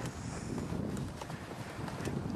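Wind buffeting the microphone, an uneven low rumble with a few faint ticks.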